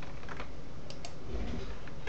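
A few light computer mouse clicks over a steady low hiss.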